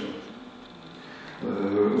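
A man's microphone voice pauses between sentences, leaving a short quieter stretch of room sound. His voice starts again about one and a half seconds in.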